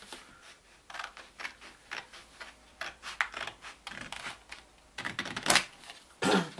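Scissors snipping through thin pizza-box cardboard in a run of short, crisp cuts, about two a second, with a quicker, louder cluster of snips near the end.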